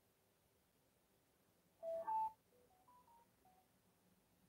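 Near silence, then about two seconds in a phone's electronic two-note tone, a lower beep stepping up to a higher one, followed by a faint run of short beeps at shifting pitches.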